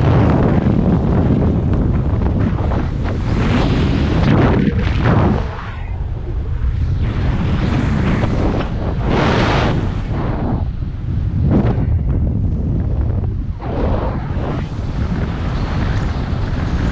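Loud wind rushing over the microphone during fast flight under a speed wing. The low buffeting rises and falls in surges every few seconds.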